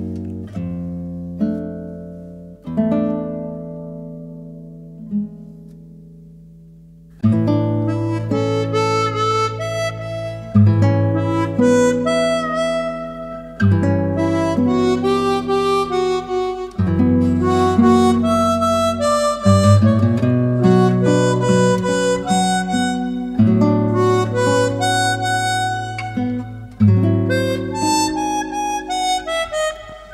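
Harmonica and classical guitar duo playing a tango. For about the first seven seconds soft notes ring and fade away, then both instruments come in loudly together, the harmonica holding long notes over the guitar's rhythmic accompaniment.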